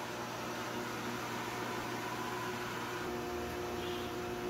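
Electric chakki flour mill grinding wheat into atta, its belt-driven motor and grinder running steadily: a constant hum with several steady tones over an even hiss.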